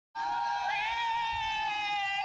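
A high-pitched, drawn-out voice-like wail that starts abruptly and holds one note with a slight waver.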